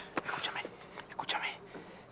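A man whispering in short, breathy bursts.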